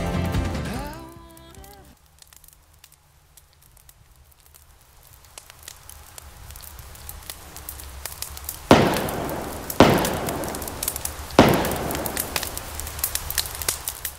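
Background music fading out, then a campfire crackling, growing louder, with three loud sharp pops in the second half.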